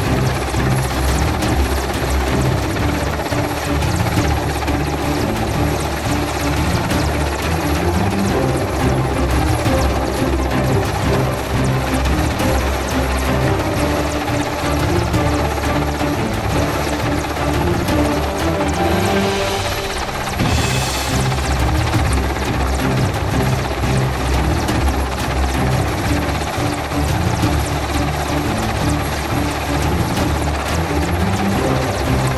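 Mil Mi-17 helicopter hovering, its rotor and turbine noise steady throughout, with music mixed in. A short rush of hissing noise rises about twenty seconds in.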